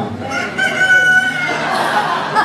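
Rooster crowing once, a single long call lasting about a second and a half.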